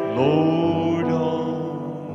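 A man's voice sings one long held note over sustained chords on a Roland electric keyboard in a slow worship song. The note slides up into pitch at the start and then fades gently.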